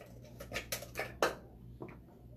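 A handful of short scrapes and taps as small craft tools and a jar of chalk paste are handled on a tabletop, bunched in the middle with one more near the end.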